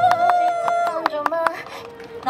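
Recorded pop track playing through a small portable amplifier: a long held vocal note over sharp beat hits, which bends down in pitch and stops about a second and a half in as the song ends.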